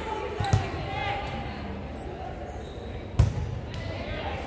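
A volleyball being hit twice, a light hit about half a second in and a sharp, loud smack about three seconds in, ringing briefly in the gymnasium.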